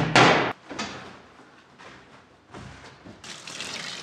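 Water from a tap running into the tub of an LG twin-tub washing machine as a steady rush that begins about three seconds in. It follows a sharp click and a brief loud rush right at the start.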